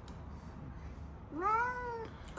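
A cranky cat gives one drawn-out meow near the end, rising in pitch and then falling, while it is held and its belly is felt for the bladder.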